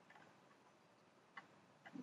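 Near silence: room tone with two faint single clicks in the second half, from a computer mouse as the document is scrolled.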